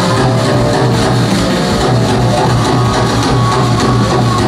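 Live rock band playing loud, with guitar and a steady driving beat under a pulsing bass line, heard from among the audience.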